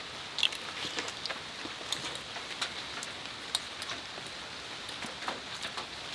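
Quiet, steady outdoor background hiss with scattered faint ticks and taps.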